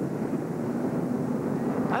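Stock car V8 engines running in a steady drone.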